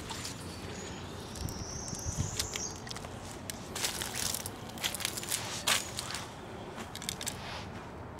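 Scattered rustling and crackling of leaves: footsteps in dry leaf litter and garden plant leaves brushing close to the microphone.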